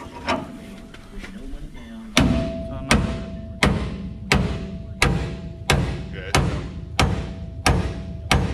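Hammer blows on a steel drift bar knocking out a Hendrickson trailer suspension pivot bushing: after a few light taps, about nine hard metal-on-metal strikes, one every 0.7 seconds or so, beginning about two seconds in, each leaving a ringing tone.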